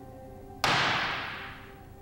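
Dramatic soundtrack sting: a single sharp crash about half a second in that dies away over a second or so, over faint held music notes.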